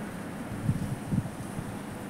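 Wind buffeting the microphone outdoors, an uneven low rumble that swells and dips.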